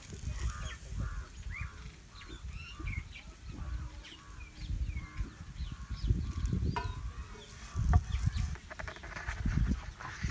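Birds calling in quick short chirps over a low rumble, with a couple of sharp clicks in the second half.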